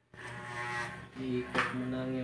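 Corded electric hair clipper running with a steady low buzz, with a person's voice over it from about halfway through and a single sharp click about one and a half seconds in.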